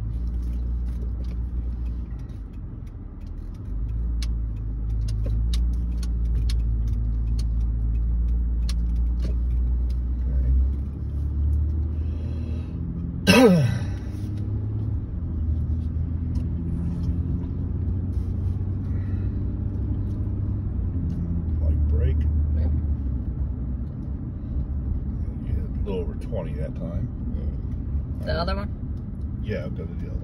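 Inside a moving car's cabin: the steady low rumble of the engine and tyres at low speed. About halfway through, one short, loud sound falls in pitch. Faint voices come near the end.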